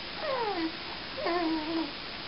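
Baby cooing: two drawn-out vocal sounds, the first sliding down in pitch, the second held level.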